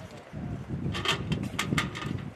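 Brass pistol cartridges clicking against each other and the plastic tray as fingers pick them out: about six sharp clicks in the second half. Wind rumbles on the microphone throughout.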